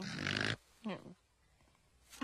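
A sleepy cartoon voice giving a short grunt in the first half-second and a brief snort about a second in, as a character is woken.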